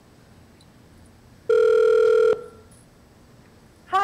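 One telephone ringback tone heard over the phone line, a steady buzzy tone lasting under a second about halfway through, while the automated system puts the call through. Otherwise a faint steady line hiss.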